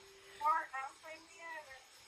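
A woman's soft voice: a short held note, then a few quiet syllables, much fainter than her talking around it.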